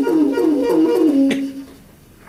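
Tenor saxophone repeating a short falling figure about four times a second, then settling on a held low note that fades away about a second and a half in. A sharp click comes just before the fade.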